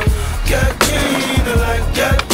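Skateboard sounds over a hip-hop beat: urethane wheels rolling on pavement and a few sharp clacks of the board, the loudest near half a second and just after.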